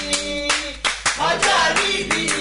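Steady rhythmic hand clapping, about three to four claps a second, keeping time with singing voices of a praise and worship session.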